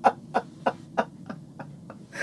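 Women laughing: a run of short, even "ha-ha" pulses, about three a second, loudest at the start and tailing off.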